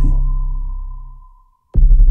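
Live electronic pop backing of synthesizer and programmed beat dropping out: the low bass fades away over about a second and a half under one steady high synth tone. After a brief silent break, the full beat and bass cut back in suddenly near the end.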